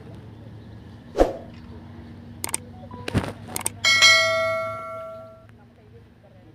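A small metal bell struck once about four seconds in, ringing with several clear tones that fade over about a second and a half. A few sharp knocks come before it, the first and loudest about a second in.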